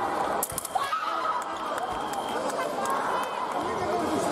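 A few sharp clicks of fencing blades and footwork about half a second in, then excited shouting voices from the fencers and the team bench as a touch is scored.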